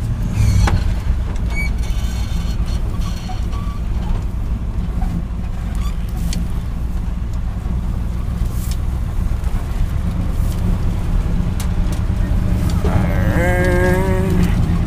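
1968 Chevy dump truck's engine running steadily as the truck drives along, heard from inside the cab, with scattered clicks and rattles.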